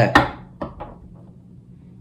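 A tarot deck being handled: one sharp knock just after the start, then a few faint taps over the next half second or so.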